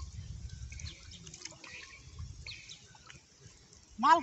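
Faint lapping and sloshing of river water around a man wading waist-deep, with a few short bird chirps.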